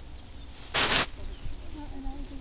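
Dog training whistle blown in two short, shrill blasts about a second in, with a slight warble to the tone.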